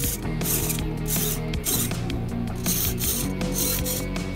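Tiny MG90S 9-gram hobby servos buzzing in about six short bursts as they swing an animatronic eyeball back and forth, with steady background music underneath.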